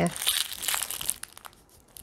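Thin plastic wrapping crinkling and crackling in the hands as a makeup brush is unwrapped, a run of small crackles that thins out a little over a second in.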